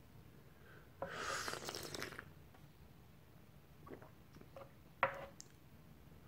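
A person slurping tea from a small tasting cup, one loud airy slurp about a second in lasting about a second. A few light clicks follow, with a sharper click about five seconds in, as porcelain cups are handled on the wooden tea tray.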